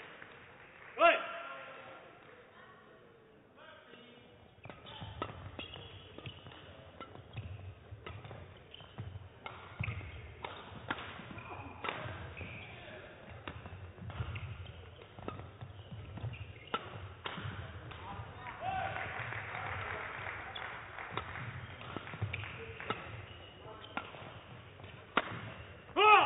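Badminton rally in a large hall: rackets strike the shuttlecock with sharp cracks at irregular intervals, over the players' footsteps thudding on the court. It follows a quieter stretch in the first few seconds.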